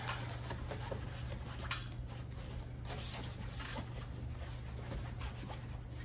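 Blackout fabric window shade being rolled up by hand: a quiet rubbing and rustling of the cloth, with a few faint brushes, over a steady low room hum.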